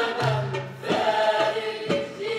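Egyptian folk music: a group of voices singing a chant-like melody together, with struck beats about once a second.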